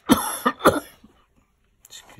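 A person coughing twice in quick succession, two loud harsh coughs within the first second.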